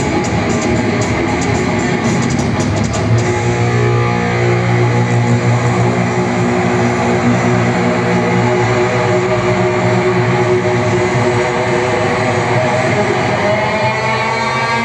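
Live heavy metal: a loud, distorted electric guitar played through stage amplifiers. For the first three seconds it plays with sharp drum and cymbal hits, then it holds long, ringing notes.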